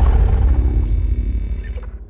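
Tail of a logo intro sound effect: a deep low boom rumbling and fading out, with faint lingering tones above it, dying away toward the end.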